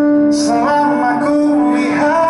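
Live pop band music: a male lead singer over acoustic and electric guitars, with a chord held underneath. The voice comes in about half a second in.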